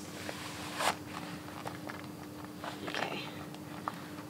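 Handling of glossy red Pleaser knee-high platform boots as they are adjusted on the feet: brief rustling swishes, the loudest about a second in, with small clicks, over a faint steady hum.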